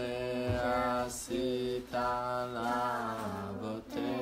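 A man singing unaccompanied in a slow chant-like melody: long held notes that bend gently in pitch, broken by short pauses about every second.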